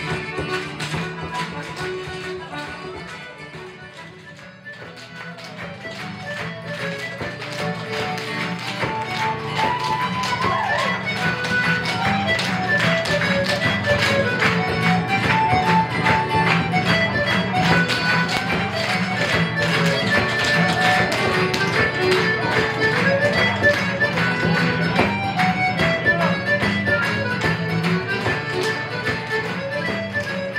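Live Irish traditional dance tune from a small pub band with guitars, with the dancers' steps tapping on the wooden floor. The music drops away about four seconds in and then builds back up as the tune picks up.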